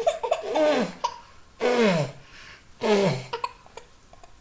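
Laughter and playful vocal sounds in three bursts about a second apart, each sliding down in pitch.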